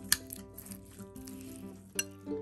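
Soft background music with held notes. Over it, a metal spoon clicks and scrapes against a ceramic bowl while mashing rice, with the sharpest clink about a tenth of a second in.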